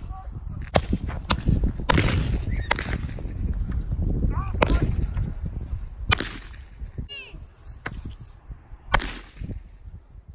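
Handheld fireworks firing: a string of sharp pops at irregular intervals of one to two seconds, with two short whistles midway, one rising and one falling.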